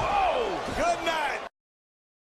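Shouting voices mixed with a slam-like impact sound effect, as of a wrestler hitting the mat. It all cuts off suddenly about one and a half seconds in.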